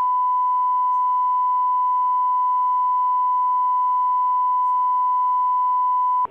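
Broadcast line-up test tone: one steady, unwavering pure tone, cutting off just after the end. It alternates with a spoken ident on the programme-sound feed, marking the feed as live while proceedings are paused.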